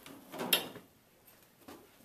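A short faint rustle ending in one sharp knock about half a second in, then near silence and a faint tap near the end: handling noise as a body is moved among chairs.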